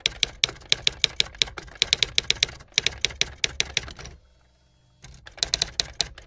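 Typewriter-style typing sound effect: rapid, uneven key clicks that stop for about a second a little after four seconds in, then start again.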